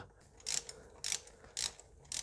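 Ratchet wrench clicking in three short bursts about half a second apart, snugging a spark plug down lightly through a socket extension.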